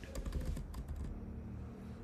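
Computer keyboard keystrokes while code is typed: a few quick clicks in the first half second, then quieter.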